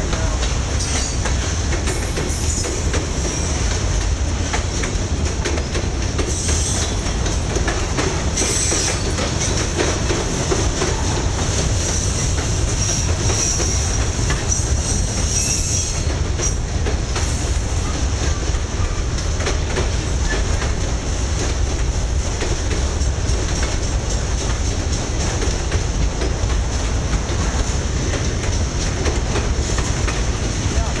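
Freight train of autorack cars rolling past close by: a steady rumble of wheels on rail with clickety-clack over the joints and brief high wheel squeals now and then.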